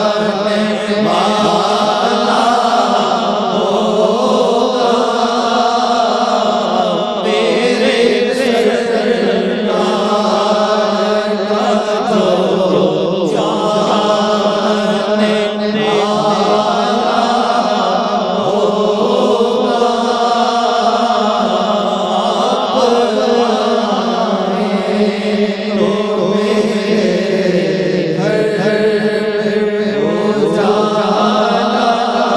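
Male voices singing a naat, Urdu devotional praise poetry, with long melismatic sung lines over a steady low held drone.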